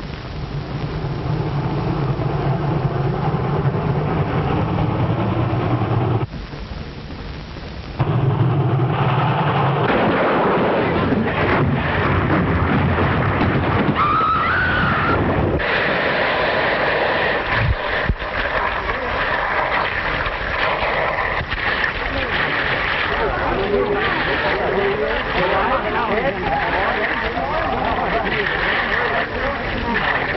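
Train wreck sound effects on an old film soundtrack: a train running, then a long, loud crashing and rumbling noise.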